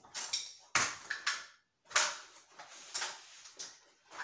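Tools and loose objects being handled and moved about in a search for wire clippers: a quick run of about six sharp clatters and knocks with scraping and rustling between them.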